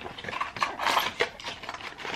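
Packaging of a blister pack of supplement pills being handled: a run of small clicks and crinkling, busiest about half a second to a second in.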